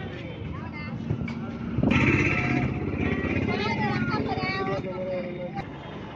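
People talking at a street stall over road traffic, with a few light knocks early on. About two seconds in, a motor vehicle passes close and the sound grows louder.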